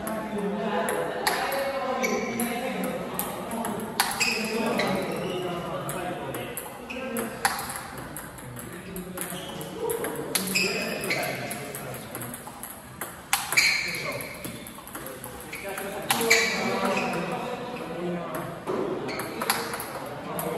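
Celluloid-type table tennis balls clicking sharply off rubber paddles and bouncing on the table every few seconds, as backspin balls are fed and hit back with forehand strokes. Voices talk throughout.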